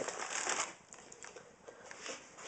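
Plastic bread bag crinkling as two slices of bread are pulled out of it, loudest in the first half second, then dying down to a few faint rustles.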